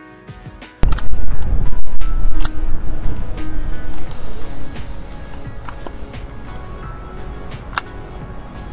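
Soft background music, then about a second in a sudden loud low rumble of outdoor noise that eases down after about four seconds, with a few sharp clicks.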